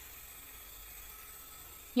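A faint, steady hiss with no distinct events.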